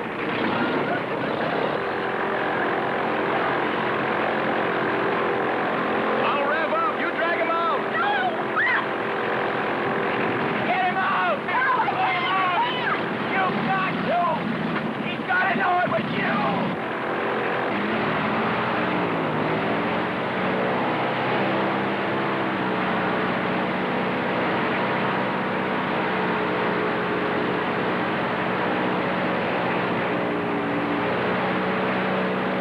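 Airboat engine and propeller running steadily, with a man shouting for several seconds in the middle.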